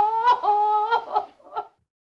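A woman singing held, sliding notes without clear words, breaking into a few short notes and stopping abruptly near the end.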